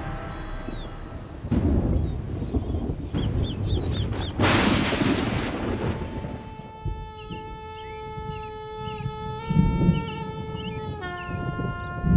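Cinematic title soundtrack: two deep booming hits with rushing whooshes like rolling thunder, then a held horn-like chord with small high chirps over it, the chord dropping to a new pitch about a second before the end.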